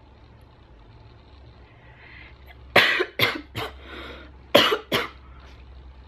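A woman's short, sharp vocal bursts, four in a quick run and then three more, made in time with a fist-pumping gesture, after a quiet stretch with only a low hum.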